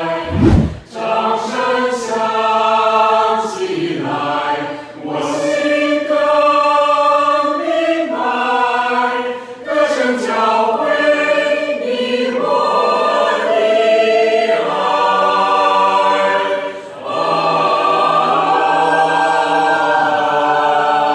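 Mixed choir of men's and women's voices singing sustained chords in harmony, in long phrases with short breaks. A brief low thump about half a second in.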